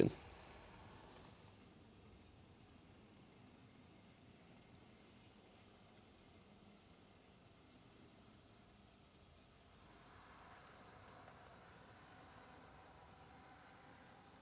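Near silence with faint running of 00 gauge model trains: a low, steady hiss of small motors and wheels on the track, a little louder from about ten seconds in.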